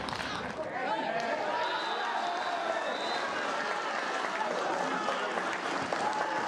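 A small crowd of football spectators and players shouting and calling out over one another at the final whistle.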